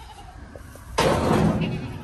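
A horned goat rubbing and knocking its horns against a plastic calf hutch. A sudden loud, rough scraping starts about a second in and lasts about a second.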